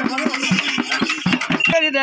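A group of men's voices chanting over rhythmic percussion hits, about three beats a second. The beats stop near the end and a held chanted note carries on.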